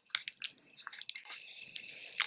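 A plastic spoon stirring a thick, lumpy paste of cornstarch, hot water, aloe vera gel and lemon juice in a small glass bowl: soft wet squishing with quick, irregular clicks and scrapes against the glass.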